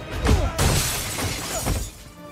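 Film fight sound effects: a hard impact about a quarter second in, followed by a long crash of shattering, breaking debris that falls away near the end, with orchestral score underneath.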